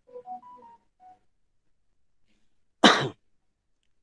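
A man's single short cough about three seconds in, the loudest sound here, after a second or so of faint background sounds.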